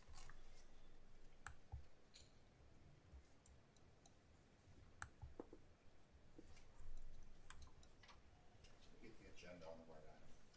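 Near silence: room tone with a few faint, scattered sharp clicks.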